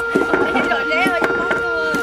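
Repeated sharp knocks, about three a second, over a steady high-pitched hum.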